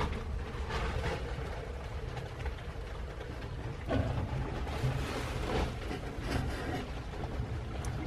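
A steady low rumble with a few faint scuffs and rustles from hands and the camera moving against the metal panels and ductwork.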